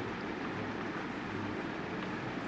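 Steady room background noise: an even hiss with a low hum, holding level throughout and with no distinct events.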